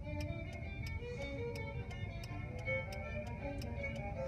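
Soft music playing in a car cabin, with held notes under a steady sharp ticking about three times a second.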